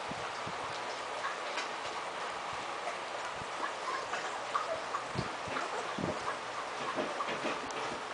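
Litter of 3½-week-old puppies scrabbling on a hard floor: their claws click and tick irregularly, with a few soft thumps in the second half as they tumble over one another.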